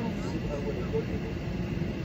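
Steady low rumble of a car cabin, heard under faint, indistinct speech.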